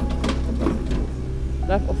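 A mini digger's diesel engine running steadily in the background, a low drone under a few words of conversation.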